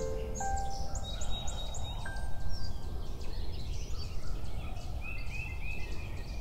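Farmyard poultry calling over a steady outdoor background hiss, with small birds chirping. A few notes of gentle music fade out about half a second in.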